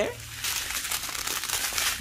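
Small plastic bags of diamond painting drills crinkling as they are handled. The crackly rustle picks up about half a second in and carries on densely.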